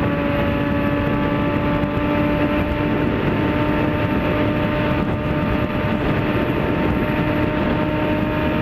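Motorcycle engine running at a steady cruising speed, a constant drone whose pitch does not change, under heavy wind and road rush.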